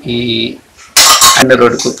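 A man's voice speaking Telugu into a close microphone: a held vowel in the first half second, a short pause, then a loud run of speech.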